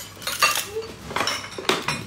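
Tableware clinking during a meal: a few sharp clinks of utensils against ceramic plates.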